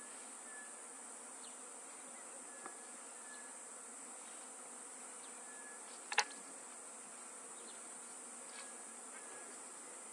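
Steady high-pitched drone of insects, with a few short faint whistles every couple of seconds and a single sharp click about six seconds in.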